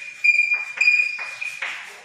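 Chalk writing on a blackboard: a few short strokes, scratchy, some carrying a thin high squeak.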